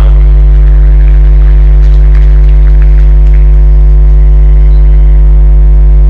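Loud, steady electrical mains hum at a low pitch with a stack of overtones, from a ground fault in the audio feed. A few faint ticks sound in the middle.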